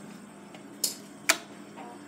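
Two sharp clicks about half a second apart, a light switch being flipped as the lights come on, over a faint steady hum.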